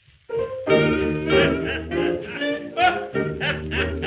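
Background music with a melodic lead line over a steady low part, starting after a brief gap about a third of a second in.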